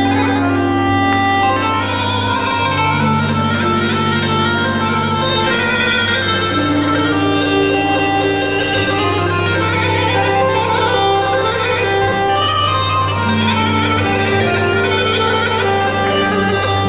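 Live Armenian rabiz band playing an instrumental passage: an ornamented lead melody with quick trills runs over a steady low drone and a bass line that steps slowly between notes.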